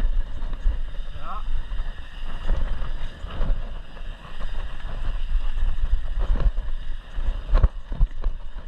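Mountain bike descending a dirt trail: wind buffets the microphone and the tyres rumble over the ground, with sharp knocks from the bike hitting bumps several times. A brief rising squeal comes about a second in.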